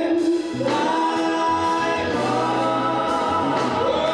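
Gospel singing by a lead vocalist and a small group of backing singers, holding long notes over a low bass line and a steady beat.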